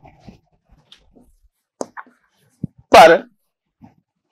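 A man's voice saying one drawn-out word about three seconds in, with a few faint ticks before it.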